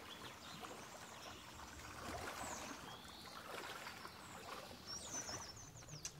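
Faint outdoor water ambience: a steady, gentle water noise, with a few faint high chirps in the middle and near the end.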